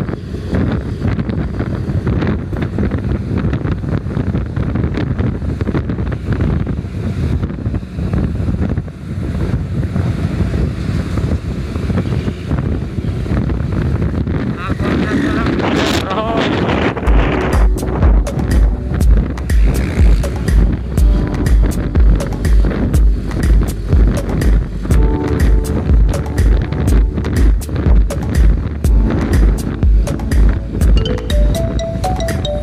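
Wind buffeting the microphone over road and vehicle noise while following close behind a bus. About 17 seconds in, music with a heavy bass beat of about two beats a second comes in and dominates.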